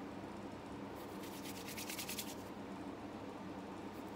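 Hands rubbing lotion together: a quick run of soft, rhythmic rubbing strokes starting about a second in and lasting about a second and a half, over a faint steady room hum.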